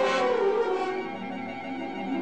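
Orchestral background music: held brass and string chords.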